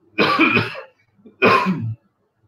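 A man coughing twice, two short loud coughs about a second apart.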